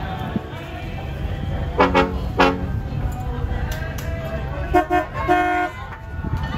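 Boat horn sounding two short toots about two seconds in, then two more at a higher pitch near the end, over a low rumble of wind on the microphone.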